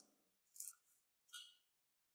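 Mostly near silence, with two faint short plastic clicks about a second apart as the battery cover of a small TV remote is opened.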